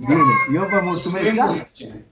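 Speech only: a man's voice over a Skype call, about a second and a half long, then a brief pause.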